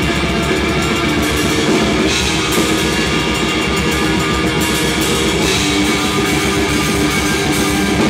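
Loud live heavy metal played in a rehearsal room: an electric guitar through an amplifier and an acoustic drum kit with cymbals playing busily together, with no bass guitar in the band.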